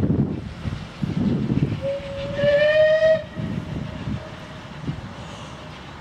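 Steam locomotive whistle from the Battle of Britain class engine 34070 Manston: one blast of about a second and a half about two seconds in, rising slightly in pitch, with a fainter held tail after it. Low, gusty rumbles of wind on the microphone come and go underneath.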